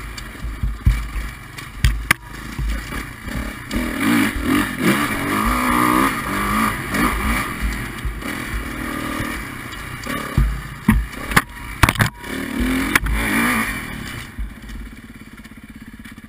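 Kawasaki dirt bike engine revving up and down as it is ridden over rocky trail, with sharp knocks and clatter as the bike hits rocks, loudest around a couple of seconds in and again past the middle. Near the end the revs drop and the engine settles to a steady idle.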